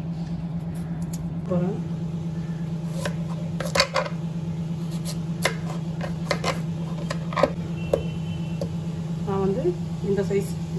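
Kitchen knife chopping raw yam on a chopping board: a series of sharp knocks as the blade goes through and hits the board, most of them between about three and eight seconds in, over a steady low hum.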